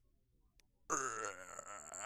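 A person's voice making a sudden, drawn-out, low vocal noise for the cartoon worm character. It starts about a second in, after near silence, and wavers in pitch.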